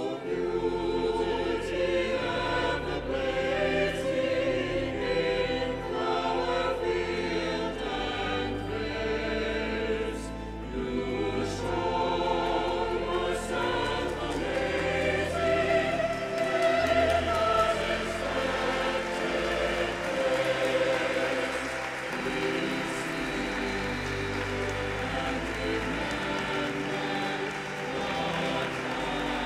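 Choir singing the recessional hymn at the end of Mass, accompanied by the cathedral's pipe organ holding deep bass notes.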